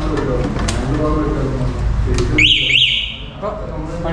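Benling Aura electric scooter's anti-theft alarm giving two quick up-and-down electronic siren chirps, about half a second in all, over people talking.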